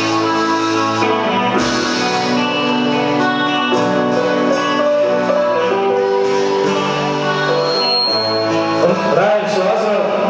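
A live band playing a song, with electric and acoustic guitars over drums.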